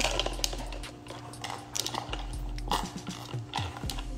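Close handling noise: irregular small clicks and rustles near the microphone, over a faint steady hum.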